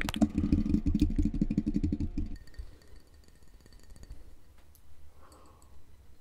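Fast close-microphone ASMR triggers: rapid crackly tapping and rubbing of hands, with mouth sounds, right at a condenser microphone, heavy in low rumble. It stops a little over two seconds in, leaving only faint clicks.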